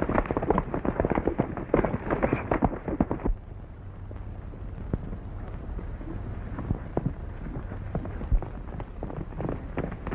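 Horses galloping: a dense clatter of hoofbeats that drops suddenly to a quieter, sparser patter about three seconds in, then grows louder again near the end.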